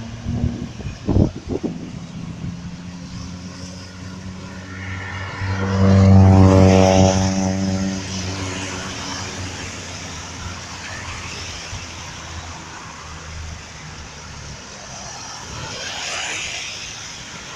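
A car driving on a wet road, heard from inside, with steady road and tyre noise. About six seconds in, an engine drone swells up loudly for a couple of seconds and then eases back. There are a few sharp knocks in the first two seconds.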